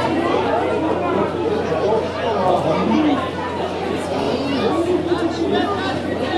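Spectators chatting: several voices talking over one another at once, none standing out as one speaker.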